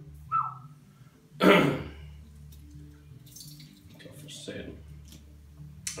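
Sparkling pét-nat wine being poured from the bottle into a wine glass, with a cough about a second and a half in as the loudest sound.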